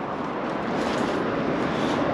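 Steady rushing outdoor noise, growing a little louder over the first second, with no clear tones or knocks in it.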